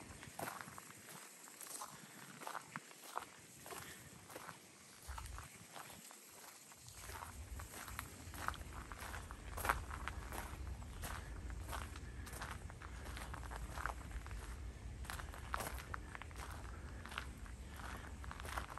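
Footsteps crunching on a wood-chip path at an even walking pace. A low rumble joins underneath about seven seconds in.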